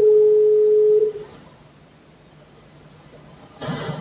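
A steady electronic beep, one pitch, starting abruptly and lasting about a second before dying away. A short burst of hissing noise follows near the end.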